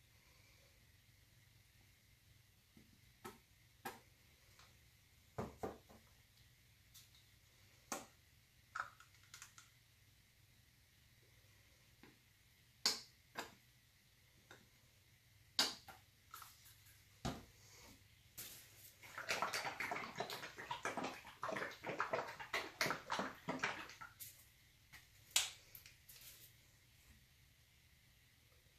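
Faint, scattered clicks and knocks of plastic painting tools being handled: a paint pipette, a paint cup and a squeeze bottle. A dense run of quick clicking and rustling comes about two-thirds through.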